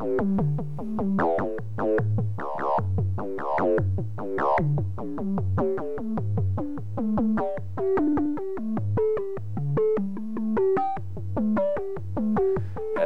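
Buchla 200e modular synthesizer playing a quick, repeating one-four-five note pattern through a sine oscillator frequency-modulated by a second sine oscillator. The FM timbre changes partway through as a knob is turned, going from dense and clangy to a sparser, brighter tone.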